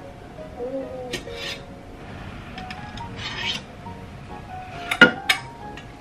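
Metal tongs and a ladle clinking against a stainless steel pot and a wire rack as boiled pork belly is lifted out, with the sharpest clinks about five seconds in, over quiet background music.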